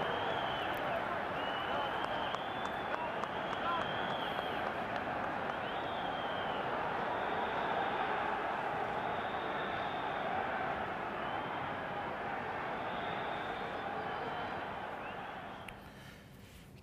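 Football stadium crowd noise from the match broadcast: a steady din of many voices just after a goal, fading away near the end.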